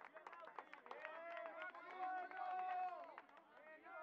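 Several voices shouting across a rugby pitch, some calls held long, with scattered sharp clicks or knocks among them.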